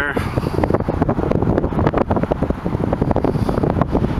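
Wind buffeting the camera's microphone: loud, uneven, gusty noise sitting mostly low in pitch.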